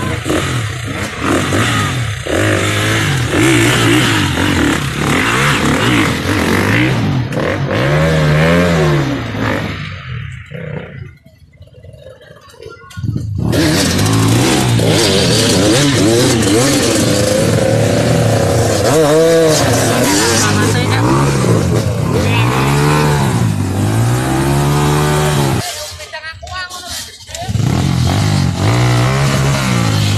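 Dirt bike engine being revved over and over, its pitch swinging up and down as the bike is worked up a muddy bank. The engine sound drops out twice for a second or two.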